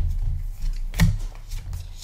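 Pokémon trading cards being drawn out of a booster pack and handled, with a sharp snap at the start and another about a second in.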